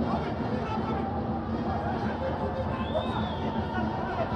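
Arena crowd noise: a steady hubbub of many voices with scattered shouts.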